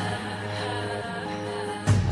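Background music with sustained held notes, and a single sharp percussive hit near the end.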